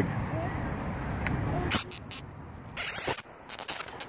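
Short scraping, rasping noise bursts from a hooked fish being reeled in and landed on a light rod, coming thick from about two seconds in, over a low steady background.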